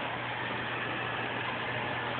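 A steady low hum under an even hiss, with no separate knocks or changes.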